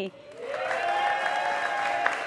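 Studio audience applauding, starting about a third of a second in, with one long held voiced cry over it.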